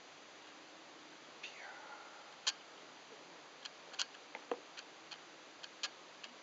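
About nine faint, irregular sharp clicks and taps as a plastic ladle pours shampoo foam over a wet dog's back. There is a short sound falling in pitch about one and a half seconds in.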